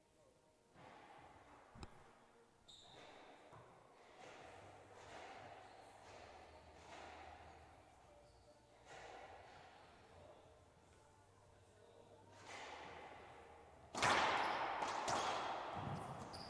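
A racquetball is struck with a racquet and slams off the walls of an enclosed court about two seconds before the end, loud and echoing, after a long quiet stretch.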